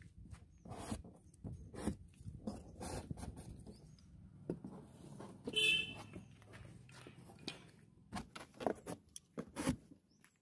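Wooden arrows being pulled out of a corrugated cardboard target, giving scattered scraping and rustling clicks. A brief horn toot sounds about halfway through.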